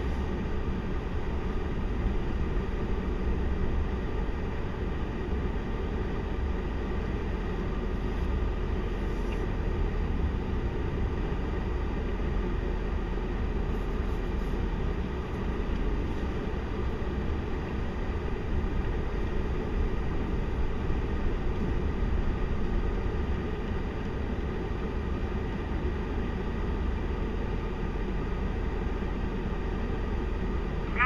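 Diesel engines of a heavy-haul pull truck and push truck working steadily under a roughly 414,000 lb combined load as the convoy rolls slowly past: a constant low rumble with a faint steady whine above it.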